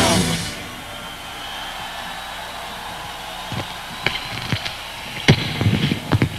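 A live rock band's final chord ends with a crash right at the start and rings out briefly. It is followed by a steady, noisy haze of crowd noise with a few sharp, scattered hits near the end.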